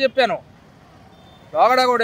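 A man speaking, breaking off for about a second in the middle, when only faint street background noise remains.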